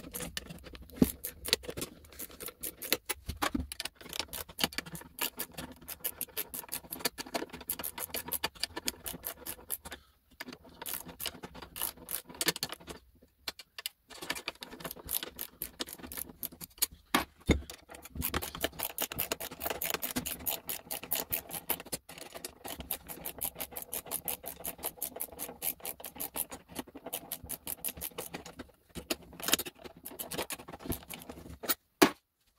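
Ratchet wrench clicking rapidly as it backs out tight, bent screws from an electric motor's end housing, played back sped up so the clicks run together into a fast chatter, broken by a few short pauses.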